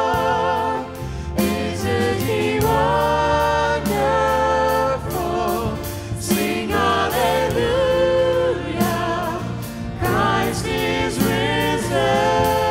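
A choir and lead singers singing a gospel worship song, with held notes and vibrato, backed by a band with bass and drums.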